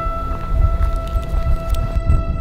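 Background music with long held high notes over a heavy low rumble.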